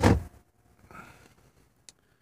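A short knock at the start, a faint rustle about a second in, and a single sharp click near the end: handling and small latch-like sounds in a quiet truck sleeper cab.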